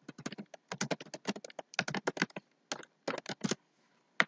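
Typing on a computer keyboard: quick runs of keystrokes with two short pauses between them.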